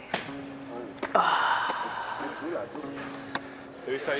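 A parkour jumper's feet landing on pavement with a sharp thud, then about a second in a second impact followed by a loud scuffing rush of noise, with brief voices from onlookers.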